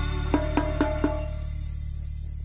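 Intro music slowly fading: a low, sustained drone with a few plucked notes in the first second. Over it runs a high, even, cricket-like chirping about four times a second.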